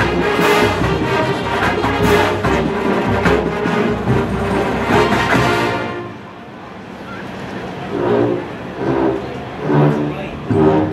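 Full marching band of brass, woodwinds and drumline playing loudly, with sharp drum hits, until the whole band cuts off about six seconds in. Quieter, separate phrases follow near the end.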